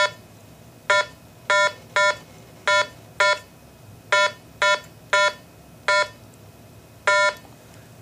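Eleven short, same-pitched confirmation beeps from a RATH SmartPhone elevator emergency phone, one for each key pressed on its keypad, at uneven spacing: an eleven-digit 800 number being keyed into the phone in programming mode.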